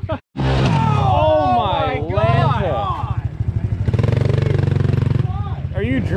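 Small four-stroke pit bike engine running with an even low putter, cut off abruptly a fraction of a second in and picking up again. Its note swells and holds for about a second near the middle, then drops back.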